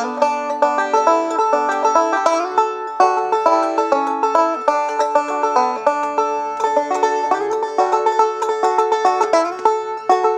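Banjo playing a fast bluegrass-style break: an unbroken stream of rapidly picked notes with one note recurring throughout, as in a high break in G.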